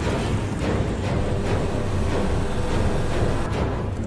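Dramatic film score with a deep, steady low drone under a dark, tense haze of sound.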